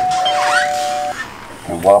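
Two-note doorbell chime: a higher tone, then a lower one joining a moment later, both held and cutting off together about a second in.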